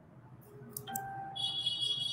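A few soft clicks, then steady electronic chime-like tones that start about a second in, with a higher, brighter tone taking over near the end.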